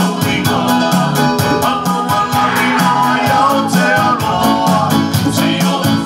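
A choir singing an upbeat Samoan church song over a steady, quick beat and a bass line from a backing band or track.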